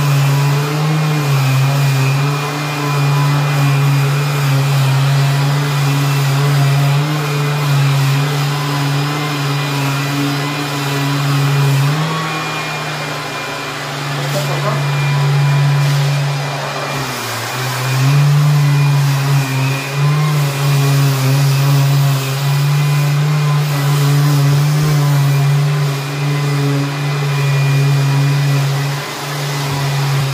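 Festool Planex long-reach drywall sander running against a wall with its dust extractor drawing through the hose: a loud, steady motor hum whose pitch dips briefly twice around the middle as the load on the pad changes.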